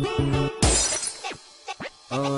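Background music breaks off about half a second in for a sudden crash of shattering glass, used as a transition sound effect; its noise fades away over the next second, leaving near quiet.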